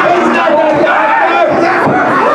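A small crowd of fans shouting and yelling, several voices at once over one another.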